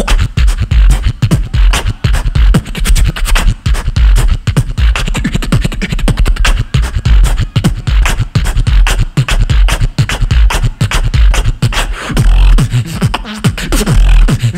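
Human beatboxing amplified through a stage microphone and PA: a dense, fast rhythm of deep bass kicks under sharp snare and hi-hat clicks, with no words.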